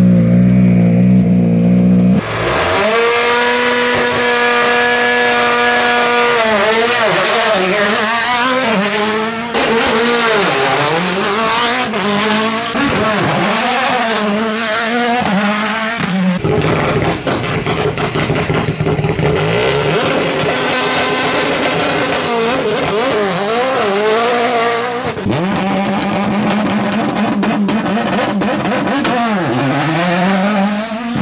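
Rally1 cars' 1.6-litre turbocharged four-cylinder engines revving hard and pulling away, the note climbing and dropping with quick gear changes. A run of sharp pops and cracks comes around the middle.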